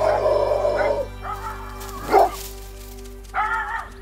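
A dog barking several times, the loudest bark about halfway through, over background music with sustained chords.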